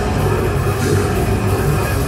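Technical death metal band playing live through a loud PA: distorted electric guitars, bass and drums in a dense, unbroken wall of sound.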